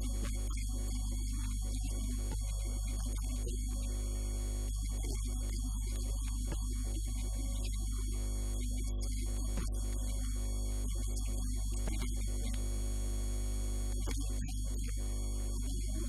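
Steady electrical mains hum on the audio line, a low buzz with a stack of higher tones above it that stays even throughout.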